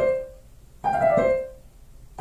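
Digital piano playing a quick descending five-note run, so-fa-mi-re-do (G down to C), used as a 'rolling' sound effect. One run dies away just after the start, and another is played about a second in.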